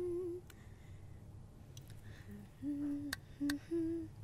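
A person humming a slow tune in short held notes, with a pause of about two seconds after the first note, and a few sharp clicks.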